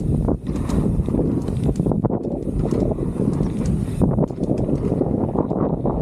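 Wind buffeting the camera microphone as a mountain bike rolls fast down a dirt trail, with tyre noise and frequent short rattles and knocks from the bike over the bumps.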